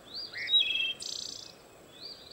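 Songbird calls: a few quick whistled notes sliding up and stepping down, then a short, very high buzz about a second in.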